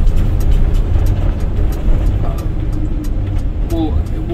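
Steady low rumble of road and engine noise inside a van's cabin while it drives.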